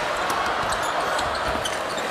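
Arena basketball court sound: a ball being dribbled on a hardwood floor, a few thuds heard over steady crowd noise, with short high squeaks from the court.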